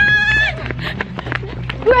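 A short, loud, high-pitched shriek from a person, about half a second long, followed by scuffling footsteps and rustling as people run.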